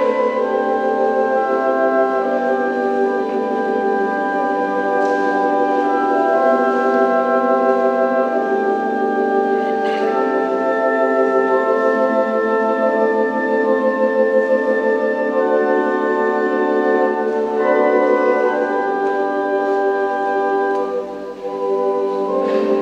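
Church organ playing slow, soft music of held chords that change every second or two, the lower notes with a slight wavering.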